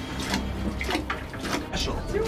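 Water sloshing and splashing in a sturgeon-spearing hole as the tined spear is hauled back up out of the water after striking a fish, with several short, sharp splashes and knocks.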